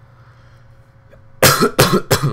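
A man coughing hard twice in quick succession, starting about a second and a half in, over a low steady hum.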